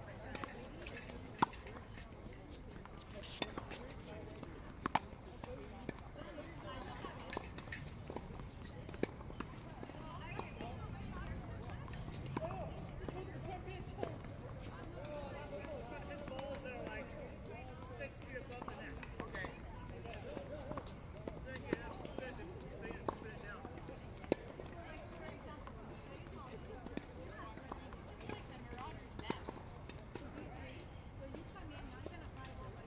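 Tennis balls struck by rackets and bouncing on a hard court: sharp pops coming irregularly, often about a second and a half to two seconds apart, with a lull in the middle. Faint voices are heard in the background.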